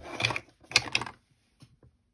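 Two short bursts of rustling and clatter from a clear acrylic stamping block and paper tags being handled on a paper towel, the second the louder, followed by a few faint light taps.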